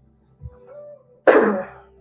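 A man coughs once, sharply, a little past halfway, over faint background music.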